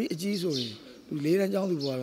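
Only speech: a man talking in an interview, in syllables that rise and fall in pitch.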